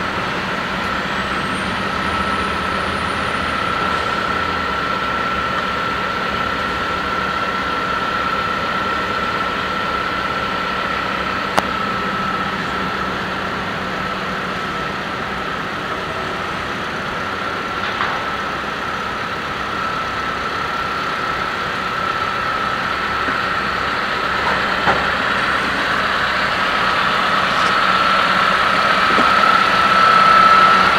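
Gehl telehandler's diesel engine running steadily, with a steady high whine over it and a few brief clicks.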